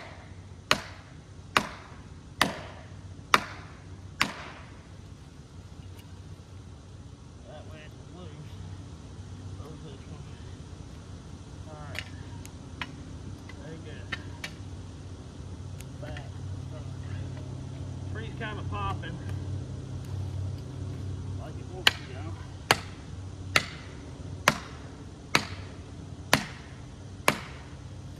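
Sharp hand-tool blows into the felling cut at the base of a poplar, about one a second: five near the start and seven more near the end. A tractor engine runs low and steady underneath, swelling a little in the middle.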